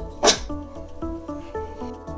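Background music with held notes, and a brief hiss about a quarter second in.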